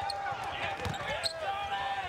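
Live basketball game sound from the court: the ball bouncing on the hardwood with short thumps, over a busy background of crowd voices.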